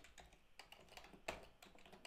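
A few faint computer keyboard keystrokes, typed unevenly with short gaps between them.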